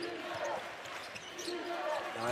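A basketball being dribbled on a hardwood arena court: a few separate bounces over a steady background haze of arena noise.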